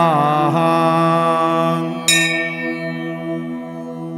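A steady musical drone holds under the mantra. The chanting voice trails off in the first half second. About two seconds in, a bell is struck once, its high ring fading away.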